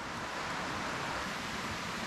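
Steady rushing background noise, even throughout, with no distinct knocks or clicks.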